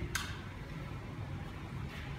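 Steady low rumble of room background noise, with one short click just after the start.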